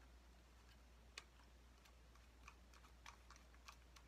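Near silence with faint, scattered clicks of small plastic parts being handled and screwed together: a phone holder being threaded onto a small flexible-leg tripod.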